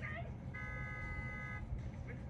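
A steady tone of several pitches sounding together, held for about a second, with snatches of voices just before and after it.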